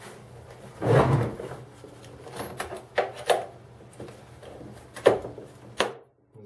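A hard plastic tool case handled on a wooden tabletop. A scraping shuffle about a second in as the case is moved and turned, then several sharp clicks and knocks as its metal latches are worked.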